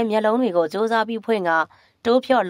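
Speech only: a narrator reading a story aloud in Burmese, without a break.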